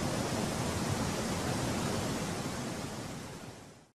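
Steady rushing noise in the outro soundtrack, spread evenly from low to high with no tune or voice in it. It fades out to silence in the last second.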